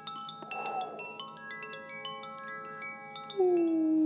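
Chimes ringing: many scattered, bright, high struck tones that each ring on. About three and a half seconds in, a louder, steady low tone begins and sinks slightly in pitch.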